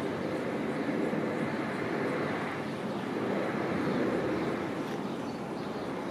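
Polybahn funicular car rolling along its cable-hauled track, a steady rumble that swells a little about four seconds in.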